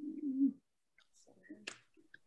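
A person humming a short 'mm' at the start, held for about half a second at a steady low pitch. Faint handling sounds and a sharp click follow near the end.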